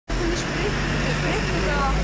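Several voices talking in the background over a loud, steady low rumble and noise, like a busy street or crowded place.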